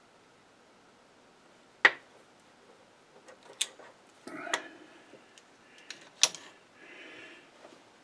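Small steel parts and hand tools handled at a stopped lathe: a sharp metallic clink about two seconds in, then several lighter clicks and a couple of short scraping rubs as a turned adapter gripped in leather-padded locking pliers is screwed into a magnetic base.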